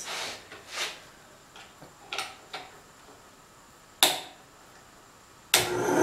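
A few light knocks and rustles of wood being handled, with a sharp click about four seconds in, then the Ryobi 9-inch benchtop bandsaw's electric motor switching on near the end and starting to run.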